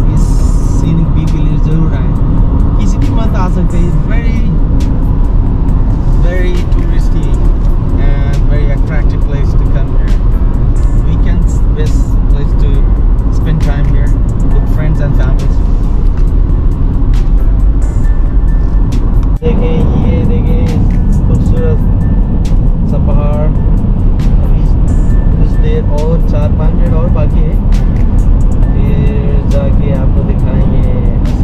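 Steady road and engine rumble of a car driving, heard from inside the cabin, with a song with singing playing over it.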